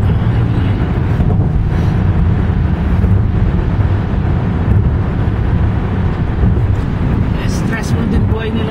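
Steady road and engine noise inside a moving car's cabin at freeway speed, a continuous low rumble with no change in pace.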